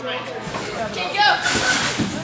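Voices of people talking and calling out in a large gym hall, with a short rush of hiss about a second and a half in.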